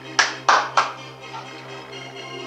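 Three loud hand claps about a third of a second apart, over house music playing from the DJ decks.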